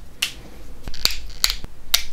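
About six small, sharp clicks, spaced unevenly: opal flakes and pieces clicking against each other and the knapping tools as they are handled.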